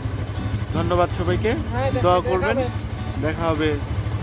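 A man's voice talking over a motorcycle engine running with a steady low drone.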